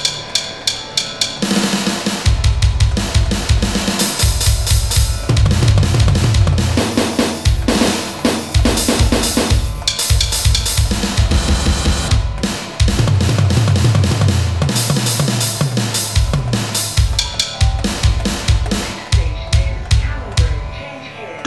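Sampled drum kit (kick, snare and cymbals) played live in a fast, chopped-up pattern on an Akai MPC500 sampler's pads. The heavy kick comes in about two seconds in, and the beat stutters and drops out briefly a couple of times in the middle.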